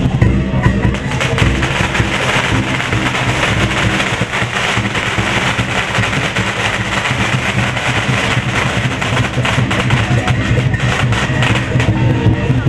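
Loud percussion music for a lion dance, drums with a dense clatter of sharp crashing hits through most of it.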